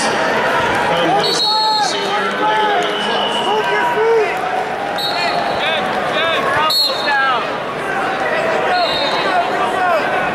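Busy wrestling arena: a steady wash of crowd chatter and voices, with many short squeaks of wrestling shoes on the mats and a few short, high whistle blasts.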